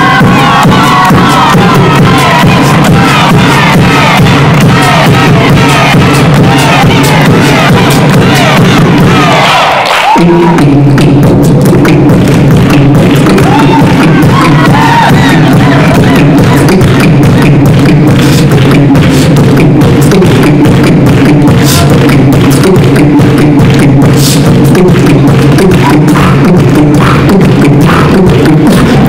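Human beatboxing into a handheld microphone: a vocal drum beat of rapid clicks and hi-hat sounds over a sustained hummed bass. Crowd cheering runs through the first part. Just before ten seconds in, a rising sweep leads into a brief drop, and then the beat returns with a steady deep bass hum.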